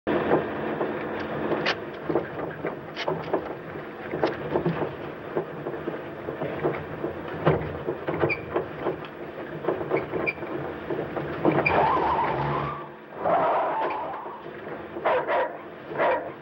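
A car being driven, with engine and road noise and many knocks and rattles throughout. Two short squeals, a little before and just after the thirteenth second, sound like tyres skidding.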